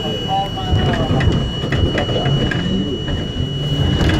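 R42 subway train starting to move out of an elevated station, heard from inside the front car: steady running rumble with a constant high whine, mixed with people's voices in the car.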